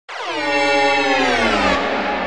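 Opening of a psytrance track: a loud, buzzy, horn-like synthesizer tone with many overtones starts abruptly and glides down in pitch, then gives way to a denser, noisier wash shortly before the end.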